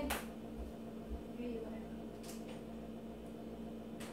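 A refrigerator humming steadily in a small kitchen, with a soft click just after the start and a faint short sound about a second and a half in.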